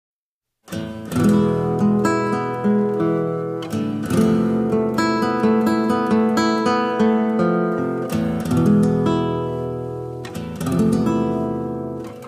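Solo nylon-string classical guitar playing a flamenco-rumba style piece: strummed chords with sharp attacks every second or so between plucked melody notes. It starts under a second in after silence.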